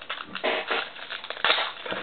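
Foil trading-card pack wrapper crinkling and crackling as it is handled, in irregular bursts that are loudest about half a second and one and a half seconds in.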